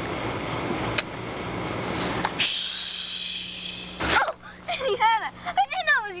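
A steady rushing hiss for about four seconds, with a sharp click about a second in, then voices rising and falling in pitch near the end.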